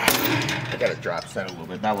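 A single sharp metal clank from a cable machine's weight stack as the plates touch down, then a man's voice with heavy breathing after the set.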